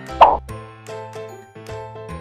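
A short cartoon-style pop sound effect about a quarter-second in, over light background music.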